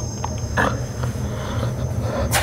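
Low, steady rumbling drone, with a short breath-like burst a little over half a second in.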